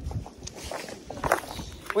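Footsteps scuffing over rocks and concrete, a few irregular crunchy steps.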